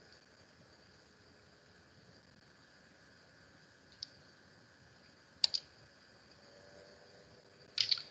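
Computer mouse clicking a few times over quiet room tone: a single click about four seconds in, a quick double click a second or so later, and another pair near the end, as a document is brought up for screen sharing.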